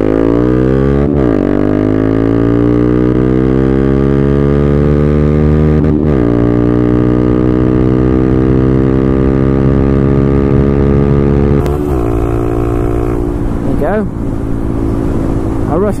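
Honda Grom 125's single-cylinder four-stroke engine, through a Tyga Performance full exhaust, pulling hard at full throttle. Its pitch climbs steadily, with quick upshifts about a second in and about six seconds in, each dropping the pitch before it climbs again. About twelve seconds in the throttle closes and the engine drops back.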